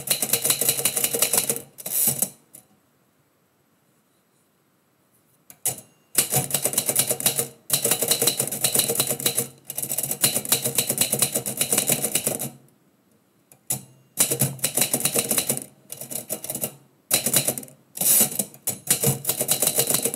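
Typewriter keys struck in quick runs as lines of text are typed. There is a pause of about three seconds near the start and shorter breaks between the later runs.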